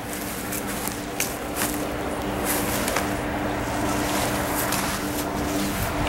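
A steady mechanical hum at a fixed pitch, with a few scattered light clicks over it.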